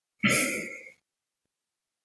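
A man briefly clearing his throat once.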